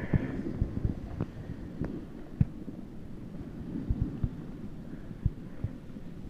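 Wind rushing over a handheld camera's microphone, with irregular soft low thumps and a few sharper knocks as the camera is jostled.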